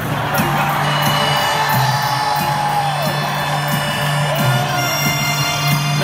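Arena crowd cheering and whooping over a sustained low accordion note. One shrill whoop wavers and slides down about halfway through.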